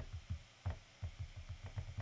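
Fingertips typing on an iPad's on-screen keyboard: a run of soft, faint taps on the glass, a few at first, then a quick burst of about eight from a second in.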